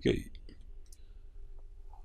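The last word of speech right at the start, then a pause holding a few faint short clicks about half a second in over a low steady hum.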